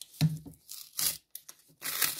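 Glued paper flap of a handmade paper advent calendar being peeled open: a few short ripping scratches, then a longer, louder peeling rustle near the end.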